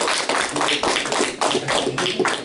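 A small audience applauding, with individual hand claps standing out.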